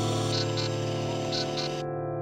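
Instrumental music: a sustained keyboard chord fading slowly, with pairs of soft high ticks about once a second.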